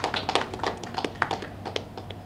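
Scattered hand clapping from a small group: a run of sharp, irregular claps, several a second.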